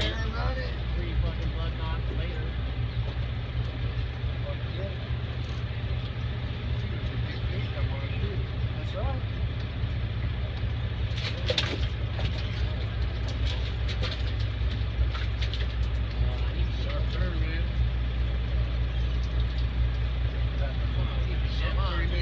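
Boat engine running at a steady low drone, with indistinct voices of people on deck over it.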